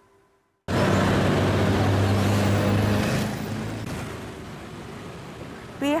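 Road traffic: a motor vehicle's engine running close by. It starts suddenly about half a second in, holds steady for a couple of seconds, then slowly fades.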